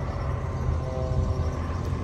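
Truck engine idling with a steady low rumble, and a faint hum joining it for about a second in the middle.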